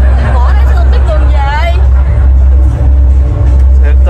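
Steady low drone of a passenger ferry's engine heard inside the cabin, with a voice over it in the first half.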